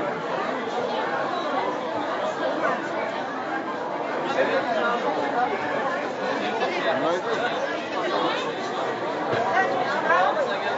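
Crowd of market shoppers and stallholders chattering: many overlapping voices, steady throughout, with no single voice standing out, under the roof of a large covered market hall.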